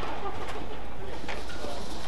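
Badminton rackets striking the shuttlecock twice, sharp hits about half a second and just over a second in, over steady arena crowd noise, with a brief shoe squeak on the court floor.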